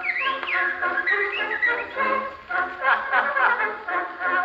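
Edison Triumph Model A cylinder phonograph playing a 4-minute wax cylinder record through its wooden horn: the band's music introducing the song, with a few sliding high notes in the first second or two. The sound is thin, with no deep bass and no high treble, as is usual for an early acoustic recording.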